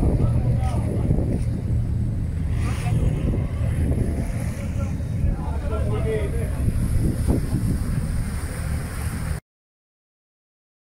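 Low steady engine rumble of a patrol boat under way, with wind buffeting the microphone and faint voices; the sound cuts off suddenly near the end.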